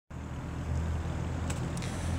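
A motor vehicle engine running steadily with a low hum, and a couple of faint clicks near the end.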